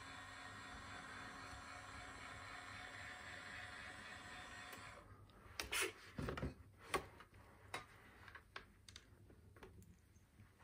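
Faint steady whine of the Patriot launcher model's electric lifting drive raising the missile tubes and antenna. It cuts off about five seconds in and is followed by a few light clicks and knocks.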